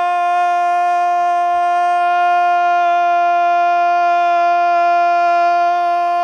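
A male football commentator's long goal cry, one loud "goool" held on a single steady note.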